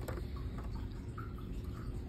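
Faint clicks and ticks of small plastic building bricks being handled and pressed, over low room noise.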